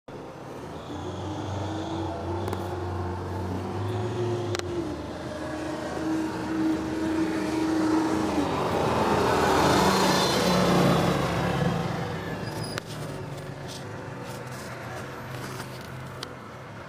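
A motor vehicle's engine running with a steady hum, the sound swelling to a peak about ten seconds in and then dropping back to a lower hum, with a few sharp clicks along the way.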